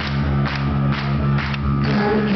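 Live hard rock band playing an instrumental stretch between vocal lines: drum kit keeping a steady beat, a hit about every half second, under sustained bass and electric guitar.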